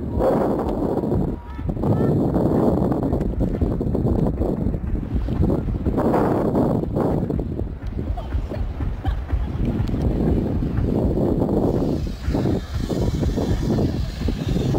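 Wind buffeting the microphone in uneven gusts, with faint voices.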